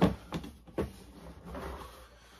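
Cardboard shoe box being handled and its lid lifted off: three sharp knocks in the first second, the first the loudest, then a softer rub of cardboard near the end.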